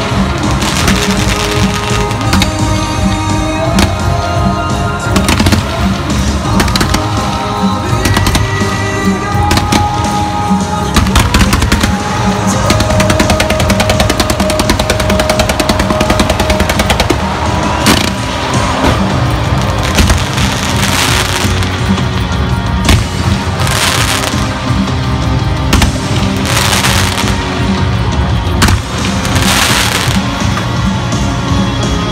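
Loud music playing over a fireworks display, with fireworks crackling and banging through it. A dense run of rapid crackles comes about eleven seconds in, and several loud bangs come in the last ten seconds.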